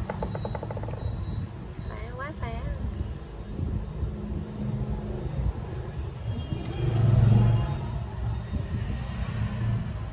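Low, continuous rumble of road traffic, swelling once to its loudest about seven seconds in, as a vehicle passes close by.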